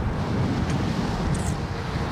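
Wind buffeting the microphone of a camera carried along on a moving electric unicycle: a steady low rush with no motor sound heard.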